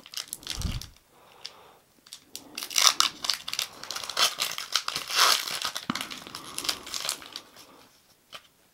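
Foil Pokémon booster pack wrapper being torn open and crinkled by hand: irregular crackling rustles, loudest about three and five seconds in.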